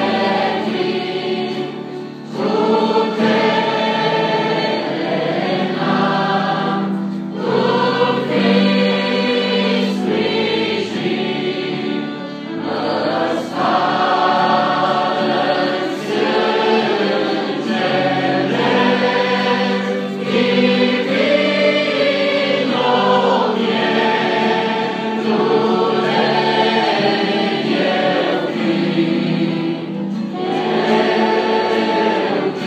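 A mixed choir of young men and women singing a hymn together, accompanied by an acoustic guitar, in phrases separated by short breaths.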